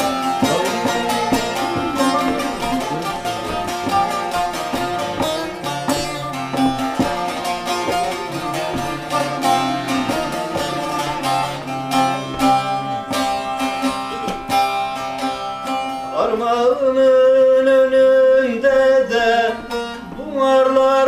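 Bağlama (long-necked Turkish saz) played solo with a pick, a quick run of plucked notes in an instrumental interlude between verses of a folk song. About four seconds from the end a man's voice comes in, holding a long wavering sung note over the strings.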